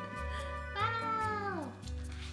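A cat meowing once, a single call just under a second long that slides down in pitch, over background music.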